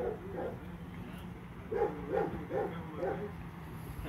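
A dog barking in quick runs of several barks, over a steady low hum.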